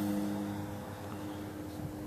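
A low, steady hum with faint background hiss.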